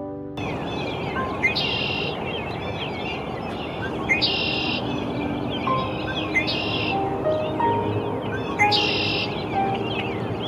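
Red-winged blackbird singing its buzzy, trilled song four times, roughly every two to two and a half seconds, over a chorus of other birds' chirps and short whistles and steady background noise.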